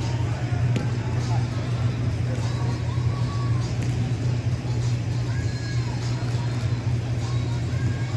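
Steady low hum filling a large indoor sports hall, with distant players' voices echoing across it and a sharp tap about a second in.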